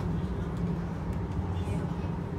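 Steady low rumble of a Transilien line H electric suburban train running along the track, heard from inside the passenger car.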